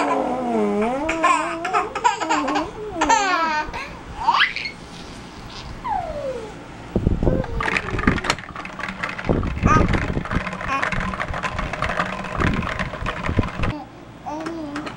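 A baby laughing and squealing in high, wavering bursts, with a couple of rising and falling squeals. From about halfway, this gives way to a run of dull thumps and knocks.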